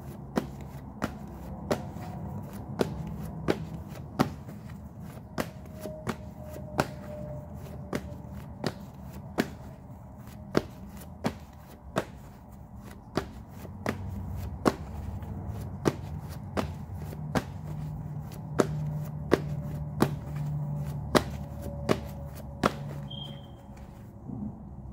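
A tarot deck being shuffled by hand: a steady run of sharp card taps, somewhat more than one a second, over a low hum.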